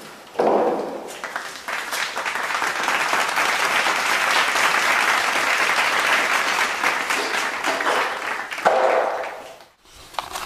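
Wooden parts of a baby grand piano's keyboard scraping and clattering as they are worked loose and pulled out: a steady rasping rattle full of small knocks that dies away just before the end.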